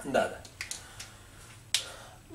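A brief bit of a man's voice, then a few light clicks and one sharp click a little before the end.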